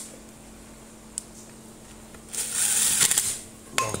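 Electric drill run in one short burst of about a second, driving a screw into an angle grinder's gear housing. A small click comes about a second in and sharp handling clicks near the end.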